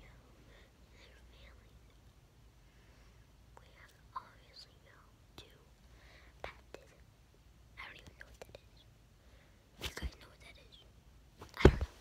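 A boy whispering softly in short scattered bits, with a couple of knocks near the end, likely the phone being bumped.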